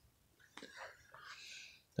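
Faint whispered muttering and breath from a man, soft and hissy, between spoken sentences.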